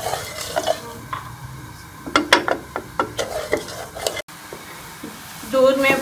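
Wooden spatula stirring sugar into water in a metal pot, scraping the bottom and knocking against the sides, with several sharp knocks between about two and three and a half seconds in. After a sudden break about four seconds in, a low steady hiss.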